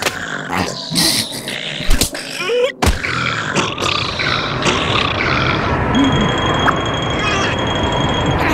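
Cartoon sound effects: a few sharp hits and short character vocal noises, then from about three seconds in a steady rushing wind noise as a snowy blizzard blows through.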